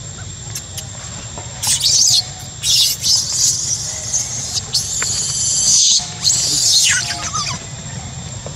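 Baby long-tailed macaque screaming in distress, a run of shrill, high-pitched shrieks starting about one and a half seconds in, with a falling cry near the end.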